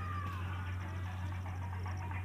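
A cat meowing: one drawn-out call that falls in pitch and fades out about a second in.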